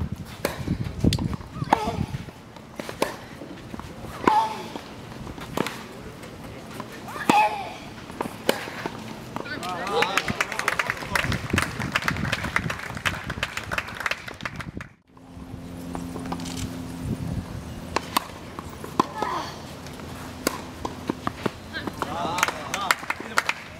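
Tennis match on a hard court: sharp hits of racquet on ball and footsteps, with short voices among them. Near the middle the sound cuts out briefly, and a low steady hum runs under the rest.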